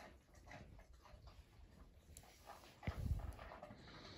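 Dalmatians shifting about on a sofa: faint rustles and small clicks, with one soft low thump just under three seconds in.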